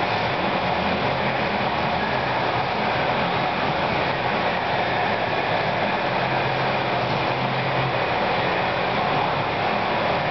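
Steady, even rushing noise with a faint low hum underneath, unchanging throughout, like a large fan or ventilation running.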